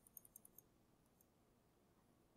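Faint, rapid clicking of a computer mouse through the first half-second, with a couple more clicks about a second in; otherwise near silence.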